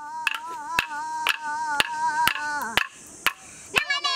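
Wooden clapsticks struck together in a steady beat, about two strikes a second, under a wavering singing voice that slides down and fades near the three-second mark.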